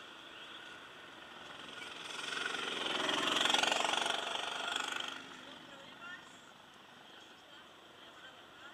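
Go-kart engine sound swelling up from about two seconds in, peaking and falling away again after about five seconds, over a low steady background.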